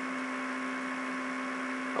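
Steady electrical hum with hiss under it, the background noise of the recording between words, holding at one pitch.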